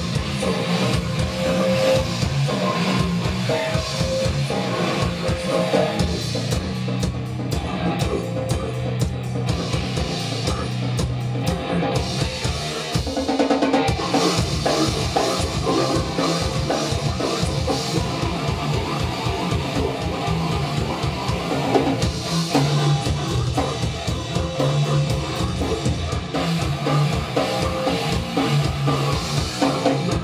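Live grindcore band playing a fast, loud song: rapid drumming and distorted electric guitar, with the vocalist at the microphone. It runs without a break.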